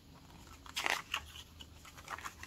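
A paper page of a picture book being turned by hand: a few short rustles of paper, the loudest just under a second in.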